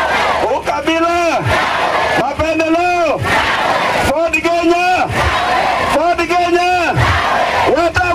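Call and response at a political rally: a man shouts short phrases, and a large crowd shouts back "tawe" (no) in unison after each, about four times in a steady rhythm.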